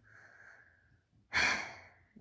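A man sighing: a faint breath in, then a louder breath out about a second and a half in that trails off.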